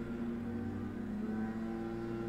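Leaf blowers running at a steady pitch: a continuous droning hum.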